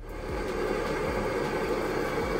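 Campingaz X2000 blowtorch burning with a steady hiss, its flame heating an aluminium moped crankcase half so a new bearing will slide in without hammering.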